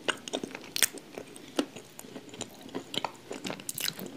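Close-miked biting and chewing of a wet lump of grey clay: irregular crunches and wet clicks, several a second, the loudest about a second in and near the end.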